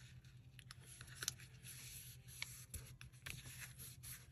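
Paper being folded and creased by hand on a cutting mat: faint rustles and a few soft ticks, over a low steady hum.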